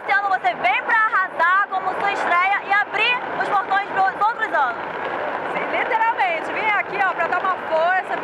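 Speech: a woman talking into a microphone, over the background hubbub of a crowd.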